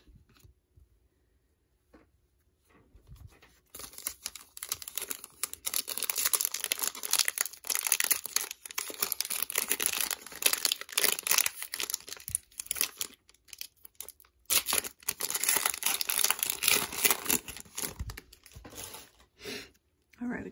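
Foil wrapper of a Metal Universe hockey card pack being torn open and crinkled in handfuls of crackling, with a short pause near the middle. The first three seconds or so are near silent.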